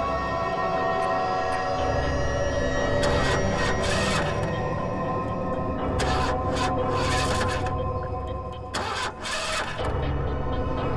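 Suspenseful background music with held tones. Over it, a car engine is cranked four times in short bursts and does not start.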